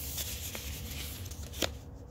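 Soft rustling of yarn skeins and their paper label bands being handled and moved, with one sharp click about one and a half seconds in.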